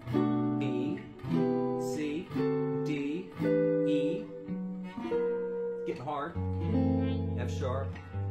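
Gibson L-5 archtop jazz guitar playing a string of sustained chords, a new chord about once a second. They are the seventh chords of G major in root position, stepping up the scale along one string.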